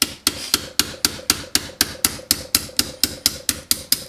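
Small hammer tapping a pin punch, about four strikes a second in an even run, driving a tight pin out of the polymer frame of a Tokyo Marui M&P airsoft pistol.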